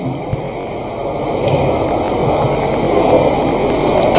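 Steady rushing noise with a low hum, growing slowly louder, with no clear speech in it.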